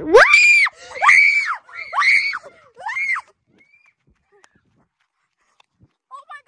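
A child screaming four times in quick succession, each shrill scream rising and then falling in pitch.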